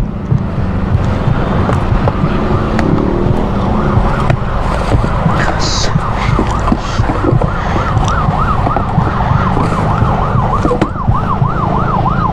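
An emergency-vehicle siren in a rapid yelp, its pitch rising and falling about three times a second. It is faint at first and grows clearer in the second half, over a steady low rumble.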